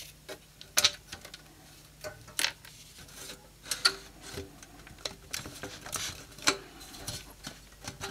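Irregular light clicks and taps of metal: screws and screwdriver on a Sony PVM monitor's sheet-metal case, then the cover being worked loose and lifted off the chassis.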